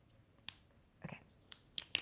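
Strip of very sticky duct tape being handled and pressed by hand, giving a few short, sharp crackles as it clings and comes unstuck.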